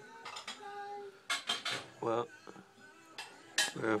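A series of sharp clinks and clicks in quick short runs, like dishes or cutlery being handled, over faint background music or television.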